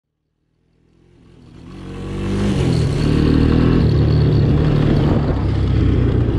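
Honda ATC 200M trike's single-cylinder four-stroke engine running on the trail, fading in over the first two seconds. Its pitch climbs a little about two seconds in, then holds steady.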